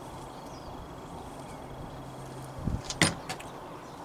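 A dull thump and a sharp click with a few lighter clicks about three seconds in, as a small corroded metal find is set down on a board, over a faint steady hum.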